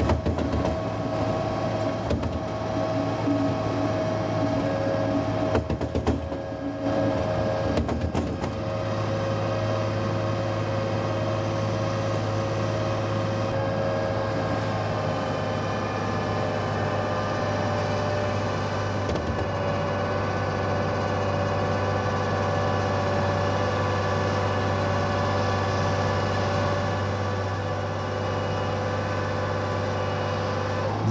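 Tractor-driven twin vertical auger diet feeder mixer running as feed is tipped into its tub, the augers turning and chopping the load. A steady droning hum, uneven for the first eight seconds or so, then even.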